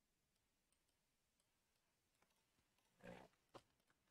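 Near silence: room tone with a few faint, scattered computer-mouse clicks and a short soft noise about a second before the end.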